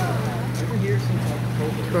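A steady low motor hum at one even pitch, with faint voices talking in the background.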